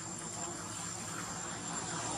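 A flying insect buzzing steadily, over a low background hiss and a thin steady high tone.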